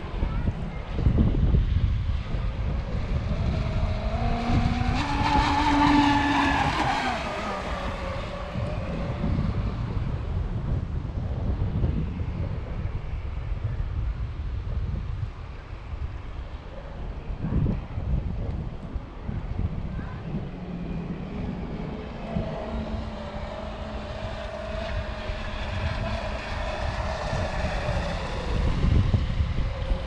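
Electric RC speedboat on 12S batteries running out on the water, its motor whine rising and then falling in pitch as it makes a pass a few seconds in and again in the last third. Wind buffets the microphone throughout with a low rumble.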